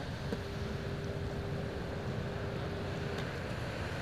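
Steady low rumble of outdoor beach background noise, with a faint steady tone held for about three seconds.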